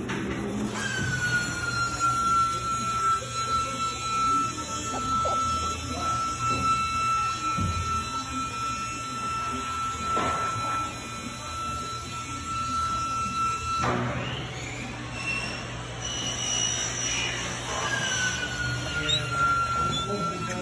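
A steady high-pitched machine whine that starts about a second in, dipping slightly in pitch before holding steady. It cuts off abruptly about 14 s in and starts again the same way near the end, over a low steady hum, with a few light knocks as the aluminium window frame is handled.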